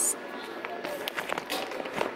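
Scattered light clicks and crinkles of plastic-wrapped costume packages and the phone being handled, over a faint steady high hum.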